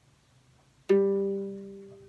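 A ukulele's open G string plucked once about a second in and left ringing as it slowly fades, sounded against a clip-on tuner while tuning; the string has reached pitch.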